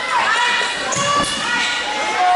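High voices of players and spectators shouting and cheering in long held calls during a volleyball rally, with a short thump of the ball about a second in.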